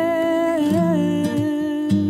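A woman's voice holding a long sung note at the end of a phrase, wavering and sliding in pitch about halfway through, over fingerpicked acoustic guitar; a plucked guitar chord sounds just before the end.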